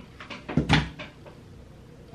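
A short clunk of something hard shutting or being set down, a little over half a second in, with a low thud under it.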